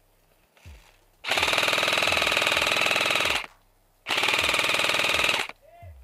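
Airsoft rifle firing two long full-auto bursts of rapid, even shots, the first about two seconds long and the second about a second and a half, with a short pause between.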